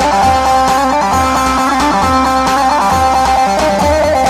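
Live Turkish folk dance music for a halay: a plucked-string lead plays a fast, ornamented melody over keyboard and a steady drum beat, an instrumental passage between sung verses.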